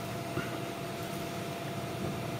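Steady background hum and hiss with a thin steady tone running through it, and a faint click about half a second in.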